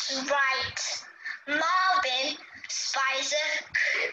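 A woman's voice in short, sing-song phrases, its pitch swooping up and down, about four phrases with brief gaps between them.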